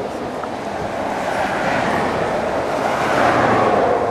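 Steady rush of motorway traffic noise, swelling as a vehicle passes about two to three seconds in.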